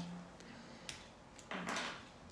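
A short rustling swish of a square paper art tile being turned by hand on a cloth-covered table, just after a faint tick.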